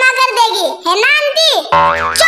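High-pitched, child-like cartoon character voices speaking. Near the end a cartoon sound effect cuts in suddenly, a low steady tone under a rising whistle.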